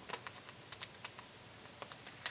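Clear plastic packaging sleeve being handled and picked at to open it: a few faint, irregular crinkly clicks.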